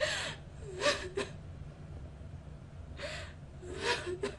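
A person gasping, about five short breathy gasps in four seconds, several with a brief catch of voice; the loudest come right at the start and about a second in.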